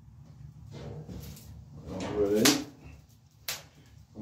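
Dry twigs and sticks rustling and knocking against each other and the grill's masonry floor as a small kindling fire is built and lit. There are two sharp knocks, the louder about two and a half seconds in and another a second later.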